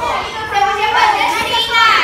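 Several young girls' voices talking over one another in lively group chatter.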